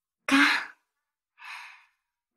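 A young woman's short voiced sigh, followed about a second later by a softer breath, acted in a spoken audio drama.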